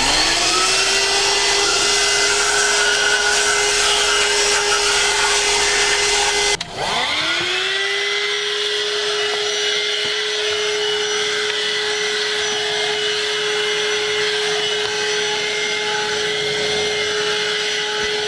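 Handheld AGARO Extreme wet & dry car vacuum cleaner spinning up with a rising whine, then running with a steady motor whine and rushing air as its nozzle works along the seat corners. About six and a half seconds in it cuts out briefly and spins back up before running steadily again.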